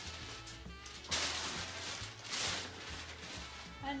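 Tissue paper rustling and crinkling as it is stuffed into a paper gift bag, with two loud crackly bursts about a second and two and a half seconds in, over background music with a steady beat.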